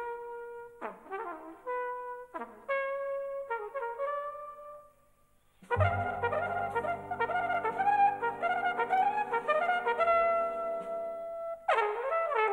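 Jazz flugelhorn solo: short unaccompanied phrases with pauses between them. About six seconds in, the big band enters with a long held chord under the flugelhorn's running lines. The band cuts off shortly before the end, leaving the flugelhorn alone again.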